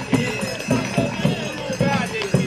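Voices singing a folk tune with music, over a beat of sharp knocks.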